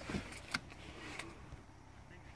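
A few short, light clicks, the sharpest about half a second in, from handling a broken-open over-and-under shotgun.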